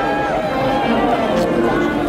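Voices calling out over background music with steady held tones.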